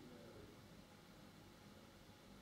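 Near silence: faint low background hum and hiss.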